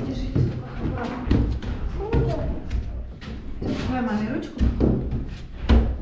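Indistinct voices over footsteps thumping on a steep staircase, with a sharper thump near the end.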